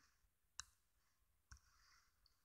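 Near silence, with two faint clicks about a second apart.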